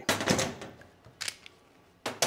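Metal hand tools clattering as mole grips (locking pliers) and a second set of grips are taken off a freshly tightened SWA cable gland: a rattly burst of clicks in the first half second, then one short click a little over a second in.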